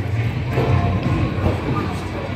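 Motion simulator's ride soundtrack: music with a steady deep rumble underneath.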